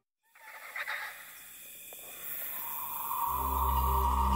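Soundtrack music stops, then a brief silence gives way to faint ambience with a couple of short sounds about a second in. A steady tone and low ambient film music fade in during the second half.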